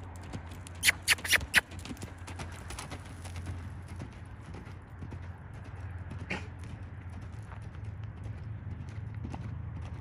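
Hoofbeats of a horse loping on a dirt arena: a quick run of sharp strikes about a second in as it passes close, then fainter, over a steady low hum.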